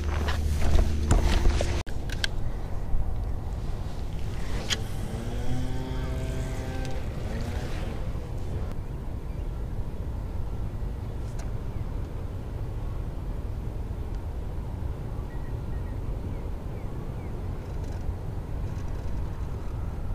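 Steady wind rumbling on the camera microphone, with a brief pitched sound about five seconds in.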